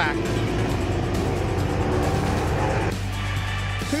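A NASCAR Whelen Euro Series stock car's V8 engine running hard on track, over a background music bed. The engine sound cuts off about three seconds in.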